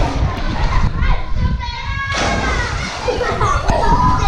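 Children's voices calling and playing in a swimming pool, over a steady low rumble of water moving against a camera held at the water's surface.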